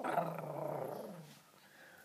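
A person's voice growling in play, one rough growl about a second and a half long that starts suddenly and fades out.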